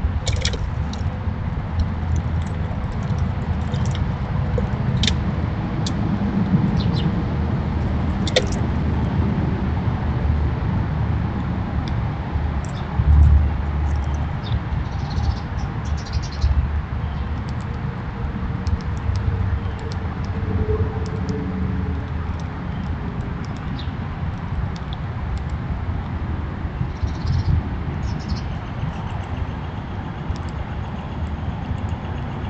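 Steady low outdoor rumble, swelling briefly about 13 seconds in, with scattered short high chirps and ticks over it.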